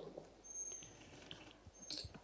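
Faint handling noise of a lectern gooseneck microphone: scattered light taps and rustles as it is touched and adjusted, with a brief faint high squeak about half a second in.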